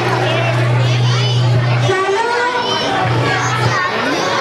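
A crowd of children chattering and calling out all at once, many high voices overlapping. A steady low hum runs underneath and breaks off about two seconds in.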